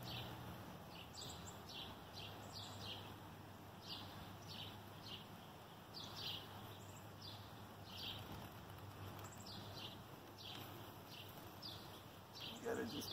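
Faint outdoor ambience of small birds chirping: many short, quick falling notes scattered throughout, over a low steady hum and light hiss.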